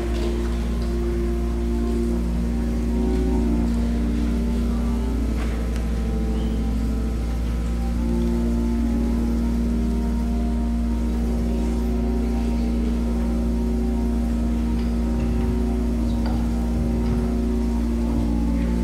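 Soft instrumental church music: long held chords that change slowly every few seconds over a steady low note.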